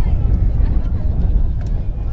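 Wind buffeting the microphone, a loud, uneven low rumble, with faint voices in the background.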